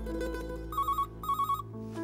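Electronic ringtone trilling in two short bursts, starting a little under a second in, over plucked-string background music.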